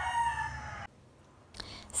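A rooster crowing: the long held final note of its crow, which cuts off suddenly a little under a second in.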